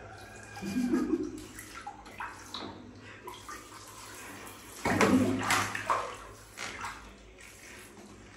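Water splashing and sloshing in a small plastic baby bathtub as a monkey is bathed with a handheld shower, with two louder bursts of splashing about a second in and about five seconds in.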